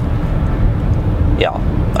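Steady low rumble of driving noise inside the cabin of a VW Tiguan 1.5 TSI cruising at about 90 km/h.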